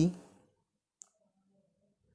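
A man's dictating voice trailing off at the end of a word, then near silence broken by one short, faint click about a second in.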